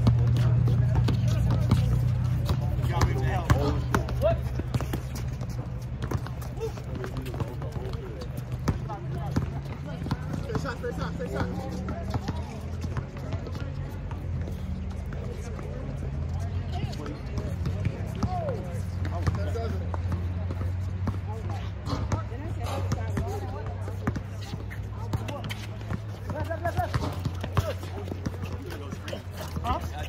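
Basketball bouncing and dribbling on an outdoor hard court in a pickup game: a run of short, sharp knocks. Music with a steady bass line plays throughout, with scattered voices of players.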